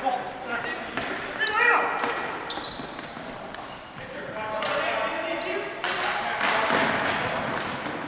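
Ball hockey play on a gymnasium's hardwood floor: sneakers squeaking in short high squeals, sharp clacks of sticks and ball, and players shouting, all echoing in the hall.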